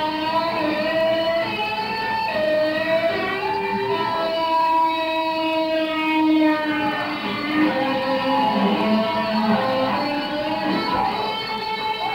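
Electric guitar solo: long sustained notes that slide and waver in pitch, breaking into quicker, choppier note runs in the second half.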